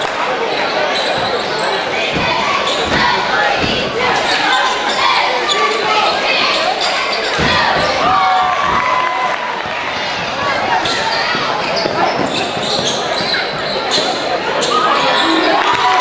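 Basketball bouncing on a hardwood gym floor, with a few low thuds in the first half, over continuous crowd chatter and shouts echoing in the gymnasium.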